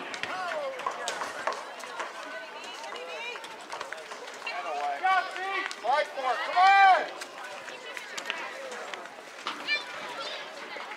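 Shouted calls from players and spectators at a soccer match, loudest in a long rising-and-falling shout about six to seven seconds in, over scattered short knocks.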